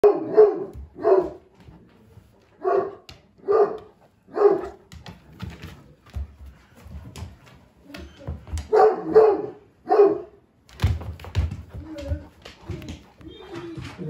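Great Pyrenees barking in deep single barks, about five in the first five seconds and three more around the ninth second. Low thuds and clicks follow for the last few seconds.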